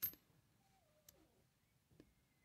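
A short sharp click of a penny being handled at the start, then a faint tick about a second in; otherwise near silence.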